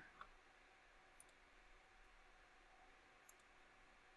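Near silence, with a few faint clicks of a computer mouse: one just after the start, one about a second in and one past three seconds.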